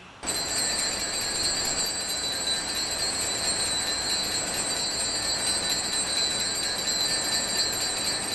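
Altar bell rung continuously during the elevation of the host, signalling the consecration. It is a steady, shrill, high ringing that begins just after the words stop and holds evenly throughout.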